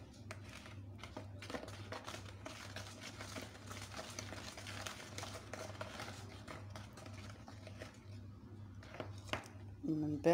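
Wire whisk beating eggs, sugar and oil in a bowl: a fast, faint, continuous swishing with small ticks of the wires against the bowl, over a steady low hum.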